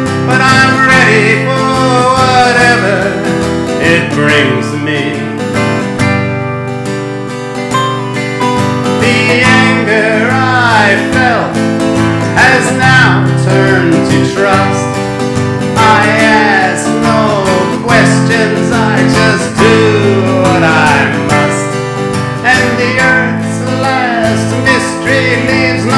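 Instrumental break of a folk song: harmonica played in a neck rack, its notes bending and sliding, over strummed acoustic guitar with an electric guitar alongside.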